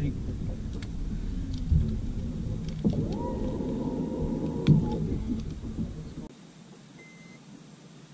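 Low, rough rumble of wind on the microphone that drops away abruptly about six seconds in, with a short steady whine from about three seconds in that rises and then holds for nearly two seconds.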